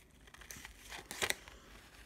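Scissors cutting through black paper: a few short crisp snips, the strongest a little past the middle.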